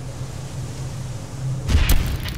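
Cinematic sound-design sting: a hissing, rumbling drone that swells into one loud booming impact near the end, the hit that leads into music.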